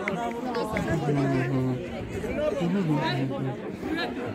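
Several voices talking over one another: spectator chatter.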